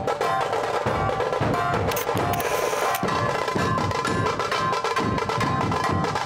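Dhol-tasha troupe playing: large barrel dhols beaten in a steady rhythm under the rapid strokes of tasha drums.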